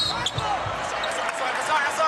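Basketball game court sound: a few bounces of the ball on the hardwood against a steady background din from the arena.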